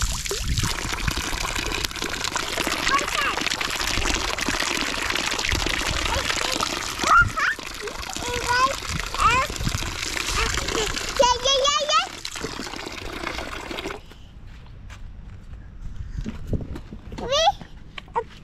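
Water from a push-button playground water tap falls in a thin stream and splashes onto a rock and the ground. The water sound stops suddenly about fourteen seconds in.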